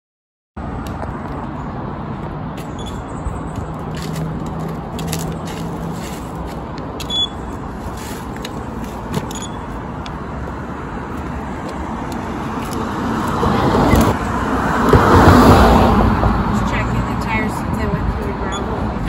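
Road traffic noise, cars going by on an adjacent road, with one vehicle growing louder and passing close about thirteen to sixteen seconds in.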